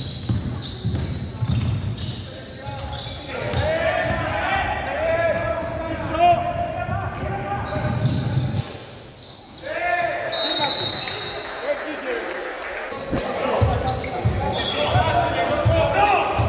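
A basketball being dribbled on a wooden court during play, repeated thuds echoing in a large gym. Players' voices call out over it.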